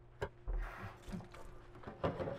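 Light handling sounds as a stainless steel mesh coffee filter and a sponge are picked up at a metal kitchen sink: a sharp click about a quarter second in, then a brief rustle with a low thump, then faint small knocks.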